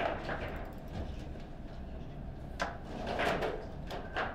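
A few light knocks and clatters over a steady low hum of room noise.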